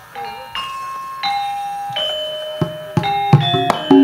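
Gamelan metallophone notes struck one at a time, each ringing on, sparse at first and then quickening, with sharp knocks coming in near the end: the opening of a gamelan piece.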